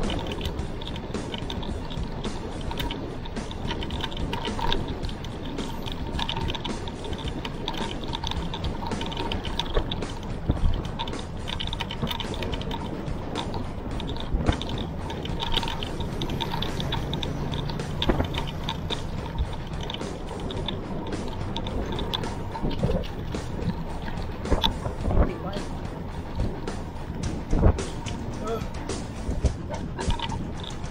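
Steady wind buffeting and road rattle on a handlebar-mounted camera as a mountain bike rolls along a concrete road, broken by frequent short knocks from bumps.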